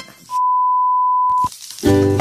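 A single steady electronic beep, one pure tone lasting about a second, set into a break in the background music, which starts again near the end.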